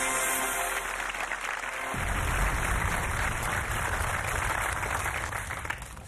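Game-show ident music under the programme logo: sustained tones at first, then from about two seconds in a denser, noisier wash with deep bass, fading out near the end.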